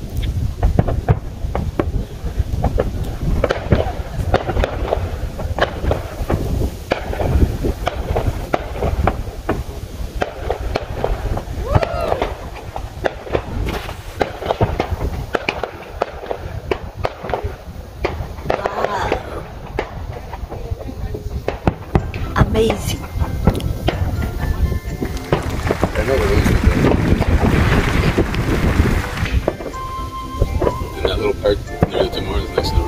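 Distant fireworks going off: many sharp pops and low booms one after another, getting denser and louder near the end.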